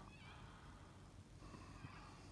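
A cat meowing faintly, with a drawn-out meow in the second half.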